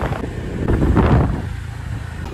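Wind buffeting the microphone on a moving motor scooter, with a rush of road noise; it swells about a second in.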